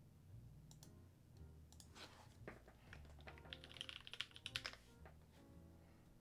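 Faint typing on a computer keyboard: a few scattered keystrokes, then a quick run of them a little past halfway, over quiet background music.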